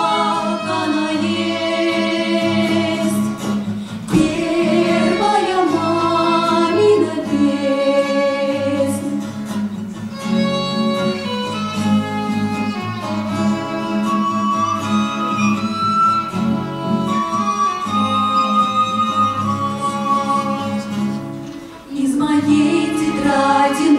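Live acoustic performance of a song: acoustic guitar and violin playing together, with singing.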